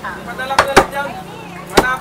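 A heavy butcher's cleaver chopping raw chicken on a wooden chopping block: three sharp strikes, two close together about halfway in and one near the end.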